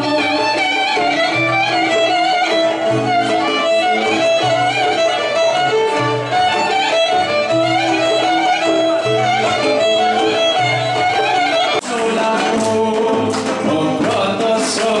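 Live Greek folk dance music: a violin plays the melody over a plucked oud and a steady low beat. About twelve seconds in, it cuts abruptly to a different piece.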